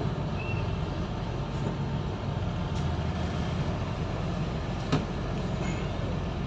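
Steady low rumble of a bus engine running, with a single short click about five seconds in.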